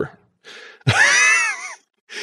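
A person's drawn-out, wordless vocal sound, high in pitch, wavering and dropping at the end, after a short breath.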